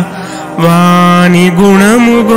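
A singer chanting a Telugu padyam (metrical verse) in a classical melodic style. After a brief soft moment, one long note is held steadily and then glides upward near the end, on the way to the next line of the verse.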